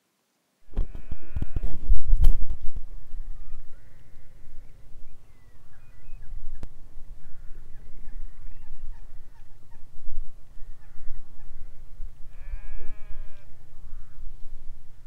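Wind rumbling on the microphone, loudest in the first couple of seconds, and a sheep bleating once near the end.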